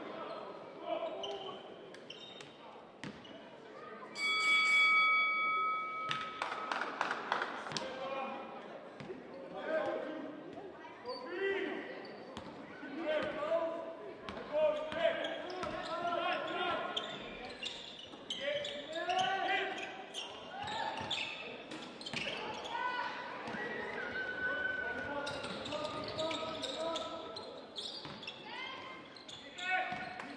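Basketball game sounds in a large hall: a ball bouncing on the hardwood court and players' sneakers, with voices throughout. About four seconds in, the arena's horn sounds as one steady tone for about two seconds.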